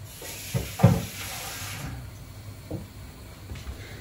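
Washed rice sizzling softly in the pot for about two seconds, with a knock about a second in and a lighter one near three seconds, as of a spoon or bowl against the steel pot.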